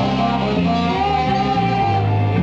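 Live band playing a blues song with acoustic guitar, trombone and saxophone over drums, a horn holding one long note above stepping low notes.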